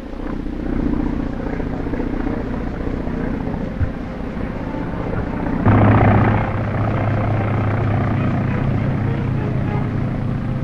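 Propeller biplane's piston engine droning steadily in flight, with a brief louder surge a little past halfway, on an old film soundtrack.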